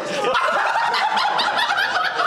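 Several people laughing and snickering together, their laughs overlapping.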